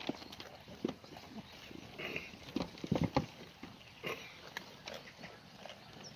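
Black goats feeding on a pile of dry vines: irregular rustling of stems and short clicks and crunches as they pull and chew, with a cluster of louder knocks about three seconds in.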